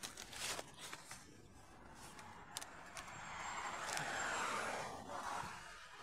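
Footsteps and rustling through dry leaf litter and twigs, with a few sharp clicks and a louder stretch of rustling around the fourth second.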